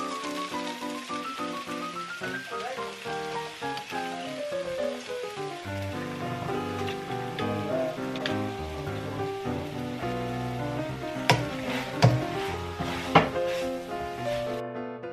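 Vegetables sizzling as they stir-fry in a wok, under background music. Near the end a few sharp knocks, like a spatula striking the pan, cut through.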